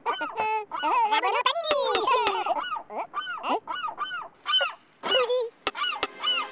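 Many cartoon seagulls squawking, short overlapping calls that each rise and fall in pitch, with a brief lull near the end.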